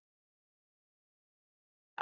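Near silence: the sound drops out completely between the speaker's words.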